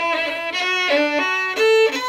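Solo fiddle playing an Irish reel slowly, at a learning tempo: a single bowed melody line, its notes changing every quarter to half second.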